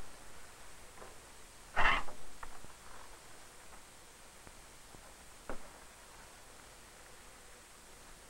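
Faint steady hiss with one sharp thump about two seconds in, a small click just after it, and a fainter knock a few seconds later.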